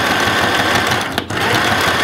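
Small plastic electric sewing machine running steadily, stitching a seam through thick fur and lining, with a brief break about a second in.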